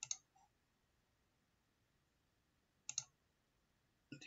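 Computer mouse clicks against near silence: a sharp click at the start with a faint one just after it, then two quick clicks close together nearly three seconds in.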